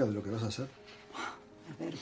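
Speech only: a low man's voice for the first moment, then a short lull before a voice starts again near the end.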